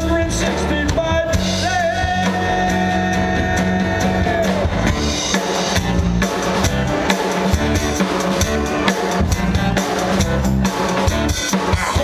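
A live rock band with a drum kit, electric guitars, bass and horns playing an instrumental passage, with the drums driving it throughout. A long note is held for a few seconds near the start.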